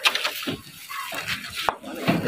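Handling noise from plastic-wrapped metal shelf posts being carried and loaded: rustling wrap with a few sharp knocks, the sharpest near the end.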